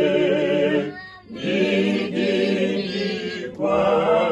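A small group of men and women singing unaccompanied, with long held notes. The phrase breaks off for a breath about a second in, and a new phrase begins near the end.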